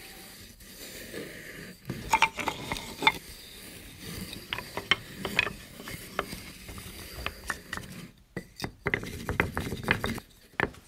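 Planed pine 2x4 pieces being set down and stacked on one another: a string of irregular wooden clacks and knocks, beginning about two seconds in.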